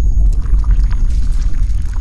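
Loud sound effect laid over an animation of a water-filled sphere cracking apart: a deep, dense rumble with scattered sharp crackles.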